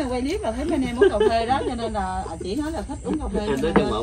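Conversation in Vietnamese: voices talk continuously throughout.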